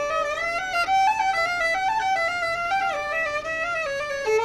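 A violin playing a slow melody: a single line of separate notes stepping up and down, the held notes wavering slightly.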